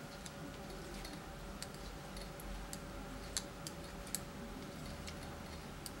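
Metal circular knitting needle tips clicking faintly and irregularly as brioche stitches are worked, with two slightly sharper clicks in the middle.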